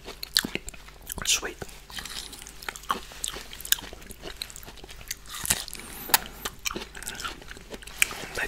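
A person chewing soft, juicy rambutan fruit flesh, with irregular mouth clicks and smacks.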